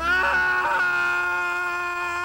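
A person screaming: one long, loud held scream at a steady pitch that starts suddenly and wavers briefly at first.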